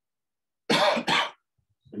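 A man coughing twice in quick succession.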